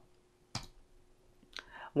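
A single computer mouse click about half a second in. A fainter tick and a short soft sound follow near the end.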